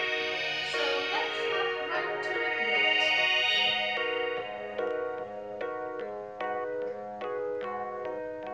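Keyboard accompaniment playing held chords, with sliding, wavering pitches in the first few seconds. Then it settles into the same chord struck evenly, a little faster than twice a second.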